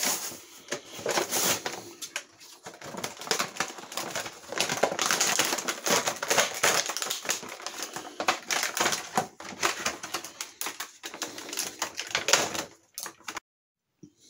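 Plastic toy packaging crinkling and rustling in rapid, irregular clicks as it is handled and torn open; cuts off abruptly shortly before the end.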